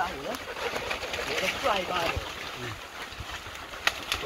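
Men's voices talking indistinctly over a rustling haze, with one sharp click just before the end.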